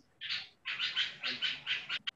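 Marker pen writing on a whiteboard: a run of short, high-pitched squeaky strokes, one near the start and then about six in quick succession, roughly three to four a second.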